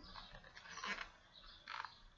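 Faint rustles and scrapes of a hardcover picture book being handled and moved, in a few short bursts.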